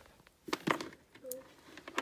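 Brief vocal sounds and small handling noises, then a sharp click near the end as a room light switch is flicked on.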